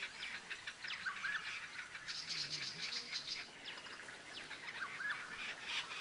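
Bush birdsong: several small birds chirping and singing, with many short, high calls overlapping throughout.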